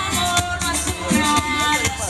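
Live band playing Latin music: a singer's voice over bass, with high percussion keeping a steady beat.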